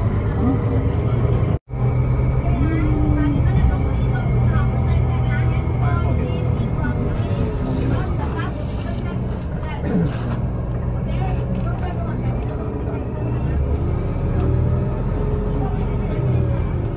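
Steady low rumble of a moving tour bus heard from inside the cabin, with indistinct passenger chatter over it. The sound cuts out completely for a moment just under two seconds in.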